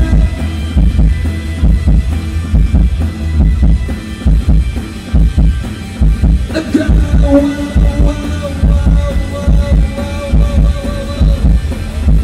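Live rock band playing, recorded from the audience: heavy bass and drums in a steady pulse, with a held note from about halfway through until near the end.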